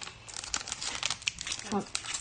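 Foil wrapper of a football trading-card pack being torn and peeled open by hand: a quick run of sharp crinkling crackles.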